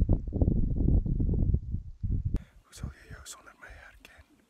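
Wind buffeting a phone's microphone in loud, gusting rumbles that fade out after about two seconds. After a cut, a man's voice comes in quietly, close to the phone.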